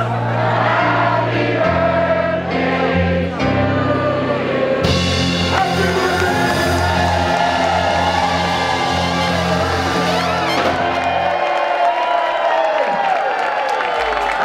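Live band music with a crowd of voices singing along. The bass notes drop out about two-thirds of the way through, leaving the voices.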